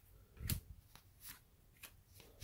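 2022 Topps Heritage baseball cards being flipped off a hand-held stack and laid on a pile: a few faint snaps and slides of card stock, the clearest about half a second in.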